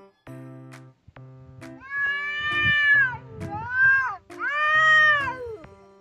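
A stray cat yowling: three long, wavering cries that rise and fall, sounding like a crying baby, the call of a cat worked up in a standoff with another cat. Light background music plays underneath.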